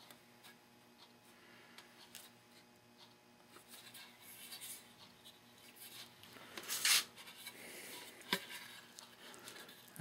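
Quiet scraping and rubbing of hand work on wood, building after a few seconds to a few louder scrapes about seven seconds in, then a single click. This is a bent landing-gear wire being worked into its notched hole in a model airplane's wooden fuselage.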